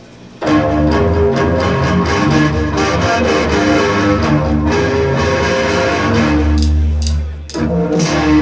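Live band starting a song: loud, dense music kicks in suddenly about half a second in, breaks off briefly near the end, then comes back in.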